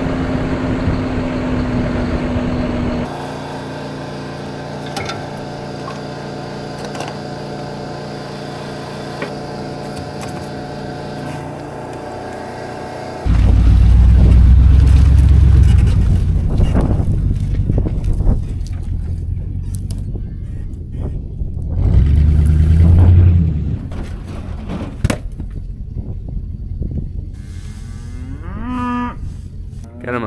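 An engine running with a steady hum for the first dozen seconds, then loud low rumbling twice, and Black Angus cattle mooing near the end.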